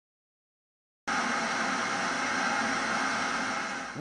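A steady hiss with a hum of several held tones, cutting in abruptly out of silence about a second in.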